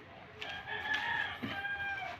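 A rooster crowing: one long crow starting about half a second in, with a short break near its end.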